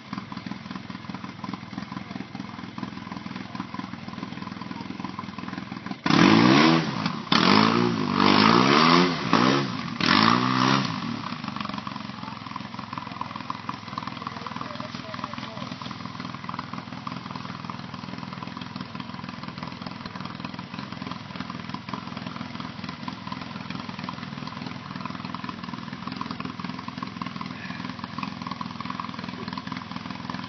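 Side-by-side utility vehicle's engine idling steadily. From about six to eleven seconds a much louder sound comes in four or five short bursts whose pitch wavers up and down.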